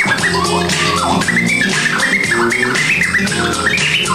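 Live old-school hip-hop music: a steady drum beat with a DJ scratching records over it, with many short, quick sweeps up and down in pitch.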